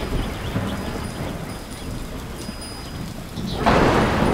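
Thunderstorm soundscape in an ambient track: a continuous low rumble of thunder under a rain-like hiss, with a louder peal of thunder swelling in shortly before the end. Faint, thin high ringing tones sit above the storm.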